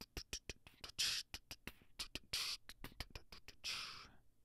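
Quiet beatboxing: a quick run of mouth clicks with three longer hissed 'tss' sounds between them, stopping at the end.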